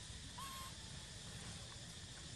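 A single short, clear animal call about half a second in, rising slightly then held, over a steady faint outdoor hiss and low rumble.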